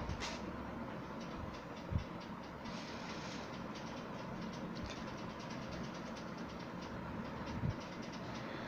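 Country-chicken curry coming to the boil in an aluminium pot: a steady, faint hiss with fine bubbling ticks, and a few light knocks.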